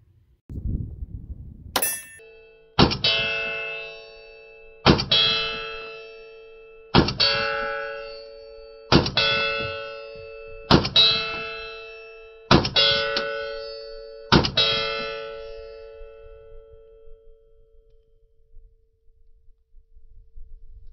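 Colt 1903 Pocket Hammerless .32 ACP pistol fired about eight times, roughly every two seconds, with two shots close together near the end of the string. Each shot is followed by a metallic ring that fades over a couple of seconds. A sharp click comes about two seconds in, before the first shot.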